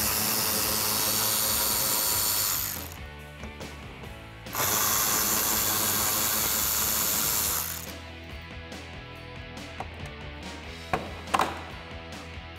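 Cordless electric ratchet with a 7 mm socket spinning out two screws, one after the other: two steady motor runs of about three seconds each, the second starting a couple of seconds after the first stops.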